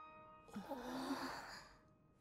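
A person sighing: one long breathy exhale lasting about a second. Soft sustained music notes fade away just before it.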